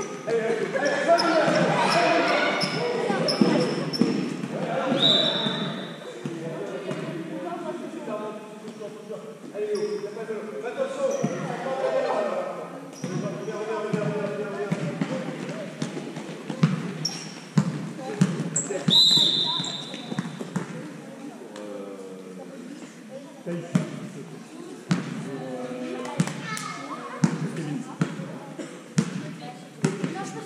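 A basketball game in a large gym: the ball being dribbled in a series of short knocks on the court, under players' and coaches' voices, with the hall's echo.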